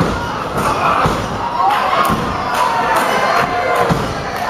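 Several dull thuds from wrestlers' bodies and strikes in a pro wrestling ring, over a small crowd shouting and cheering.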